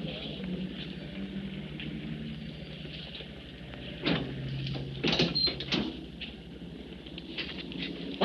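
A delivery truck's rear door being unlatched and pulled open: a few short metallic knocks about four seconds in and again a second later, over a quiet, steady background.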